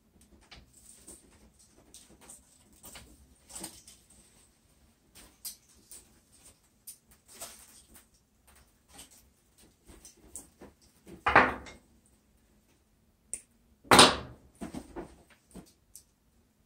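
Volkl Cyclone tennis string being threaded and pulled through a racquet's grommet holes: faint scattered rustles and clicks of handling, then two loud, brief pulls of the string through the holes, about eleven and fourteen seconds in.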